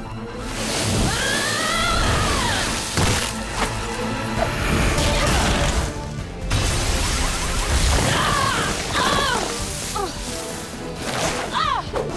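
Cartoon fight soundtrack: dramatic score music under whooshing sand effects, crashes and glass shattering.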